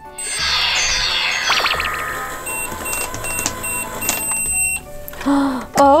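Battery-operated toy microwave running after its start button is pressed, playing an electronic cooking jingle: a cascade of falling tones, then a run of quick, evenly spaced beeps that stop about five seconds in.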